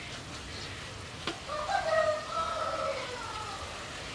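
A rooster crowing once, a long call of nearly two seconds starting about one and a half seconds in. Underneath is the steady sizzle of food frying in a wok, with a metal spatula clicking against the pan.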